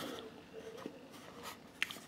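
Faint scratchy handling of a plastic CD jewel case in the hand, with a few light clicks, the sharpest near the end.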